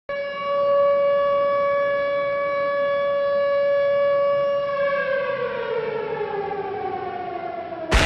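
A siren sounds one steady tone for about five seconds, then winds down, sliding smoothly lower in pitch.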